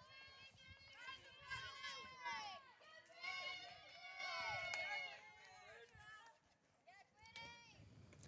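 Faint, distant, high-pitched voices calling out across a softball field, pausing briefly near the end.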